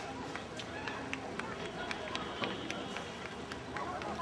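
Scattered sharp clicks and knocks, several a second, over distant voices.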